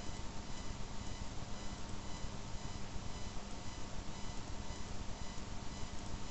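Steady background hiss from the recording microphone, with faint constant electrical tones mixed in. It is the room tone of a home screen-recording setup, with no distinct events.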